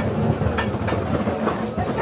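Busy market noise: a steady low rumble with background voices and scattered clicks and clatter.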